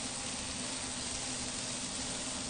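Diced corn kernels sizzling in a hot frying pan over a gas burner, a steady even hiss.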